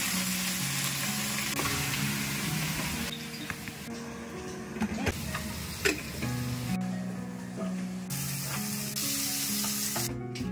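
Food sizzling as it is stir-fried in hot oil, loudest in the first three seconds and again near the end, with a few sharp clicks of utensils in between.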